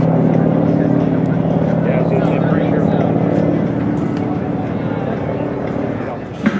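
A vehicle engine running with a steady hum that fades away over the first three or four seconds, under voices.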